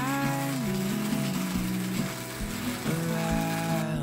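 Hand-cranked burr coffee grinder grinding beans, a steady grinding noise that stops just before the end, over acoustic guitar music.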